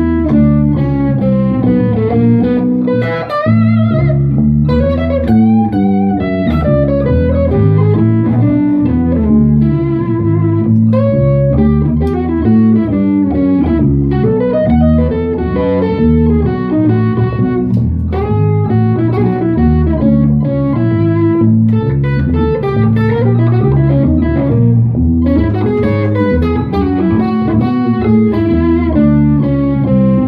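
Electric guitar played through a Fender Hot Rod Deville tube combo amp and an electric bass guitar jamming on an instrumental blues, with the notes moving continuously over a steady bass line.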